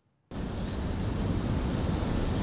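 Steady rushing background noise with no voices, starting abruptly about a third of a second in after a moment of silence, like wind on a microphone.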